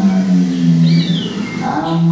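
A man's voice speaking a non-English language in long, drawn-out, sing-song syllables, heard through room speakers. A brief high falling whistle, like a bird call, comes about a second in.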